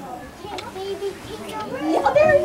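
Young children's voices and soft chatter, with a louder voice coming in near the end.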